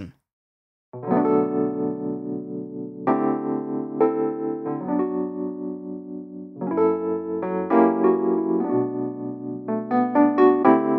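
Steinberg Amped Elektra virtual electric piano playing a slow run of sustained chords. The chords start about a second in and change every one to two seconds.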